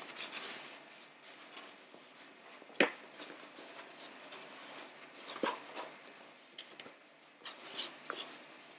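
Cotton fabric rustling and rubbing softly as it is folded and creased by hand, with a sharp light knock about three seconds in and a smaller one after five seconds.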